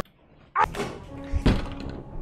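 Background music cuts off, then two dull thuds about a second apart, the second the louder and sharper.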